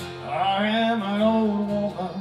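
A man singing a sustained phrase of a country-folk ballad, held on long notes, over acoustic guitar accompaniment.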